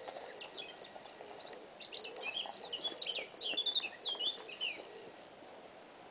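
Songbird song: a fast, varied run of high chirps and warbled notes, densest and loudest in the middle, stopping about five seconds in.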